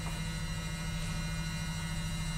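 Washing machine running a wash, heard as a steady hum.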